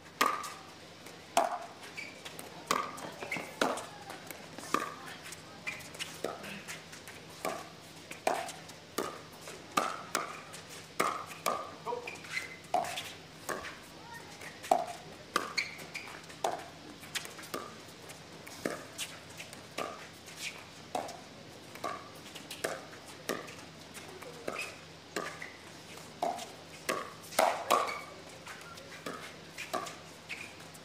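Pickleball paddles striking a hard plastic pickleball back and forth in a rally: a long run of sharp, hollow pocks, about one to two a second.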